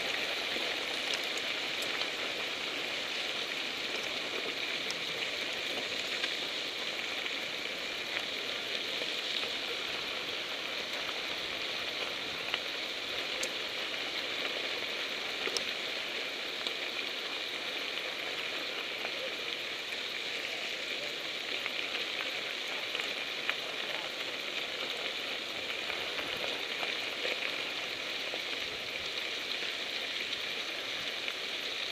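Mountain bike tyres rolling over a gravel dirt road amid a pack of riders: a steady gritty hiss with scattered small ticks.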